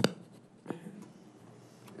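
Two short knocks over quiet room tone: a sharp, loud one at the start and a softer one under a second later.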